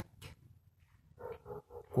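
A few short, faint animal calls in quick succession past the middle.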